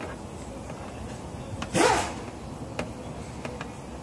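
A single short rasping scrape about halfway through, from a metal dent-repair rod moving against the inside of a car's steel deck lid, with a couple of faint ticks after it.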